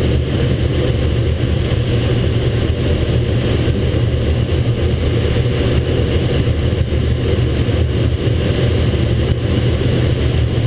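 Steady, loud rush and rumble of airflow inside a Grob G103 glider's cockpit while it is on aerotow behind a tow plane.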